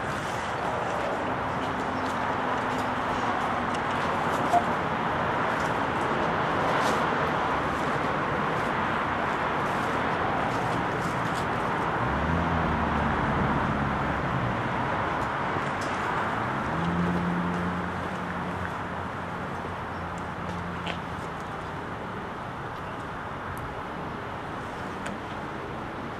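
Steady street traffic noise, with the low engine hum of passing vehicles coming through twice, about halfway through and again a few seconds later.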